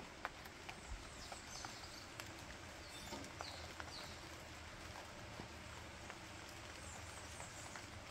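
Faint outdoor background with a few soft clicks and several brief high chirps scattered through the middle of the stretch.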